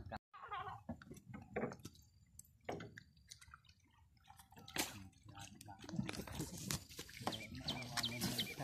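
Shallow water sloshing and splashing around people wading in a muddy canal, with a few sharp knocks, the loudest about five seconds in. Faint voices come and go.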